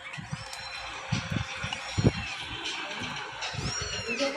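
Plastic food packaging being handled: a lidded plastic tub opened and plastic bags untied, with soft rustles and knocks over a steady background hum. A few faint high chirps come near the start and near the end.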